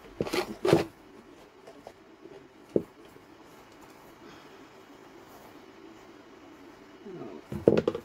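Knocks and clatter of objects being handled and set down on a tabletop: two sharp knocks at the start, a single click a few seconds in, and a cluster of knocks near the end.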